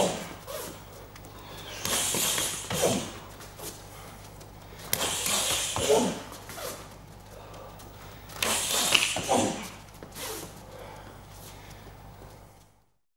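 Two fighters drilling a punching combination on a mat: about every three seconds a burst of sharp hissing breaths, short grunts and shuffling with a few slaps, over a steady low electrical hum.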